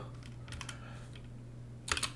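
Computer keyboard typing: a few faint keystrokes about half a second in, then a louder quick cluster of keys near the end, over a low steady hum.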